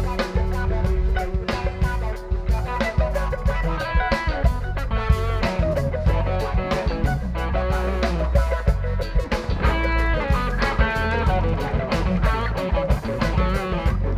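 Live rock band playing an instrumental passage: electric guitars and bass over a drum kit, with keyboards and saxophone, a lead line moving above the steady beat.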